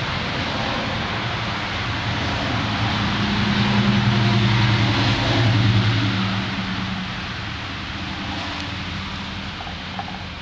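A steady low engine hum under a rushing noise, swelling to its loudest around the middle and fading toward the end, like a motor vehicle passing.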